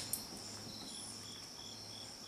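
Faint, even chirping of a cricket, about three short high chirps a second, over a steady high tone and a low hum.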